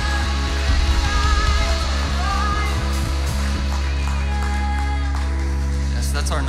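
Live worship band playing, with electric guitar, drums and voices singing. The drums drop out about three and a half seconds in, leaving a held chord.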